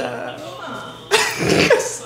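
A man's loud, rough cough about a second in, lasting just under a second.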